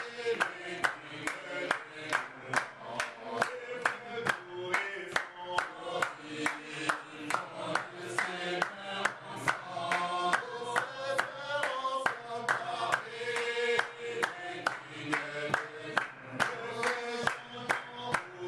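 Congregation singing together and clapping in time, about two claps a second.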